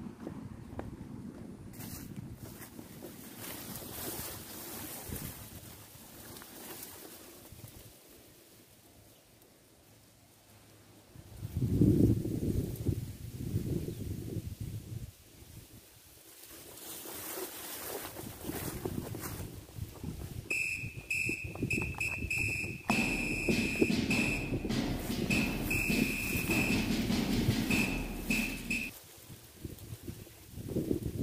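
Wind gusting on the microphone, low and blustery, dropping away for a few seconds in the middle before picking up again. From about two-thirds through, a steady high-pitched whine breaks in and out over it.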